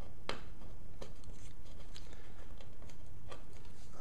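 A few small ticks and one sharp click, about a third of a second in, from trimmed painter's tape offcuts being peeled off a plywood board, over a steady low room hum.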